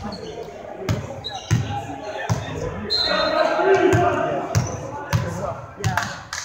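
A ball bouncing on a hardwood gym floor, about six bounces at uneven intervals, in a large gym. Players' voices and calls sound between the bounces, loudest around the middle.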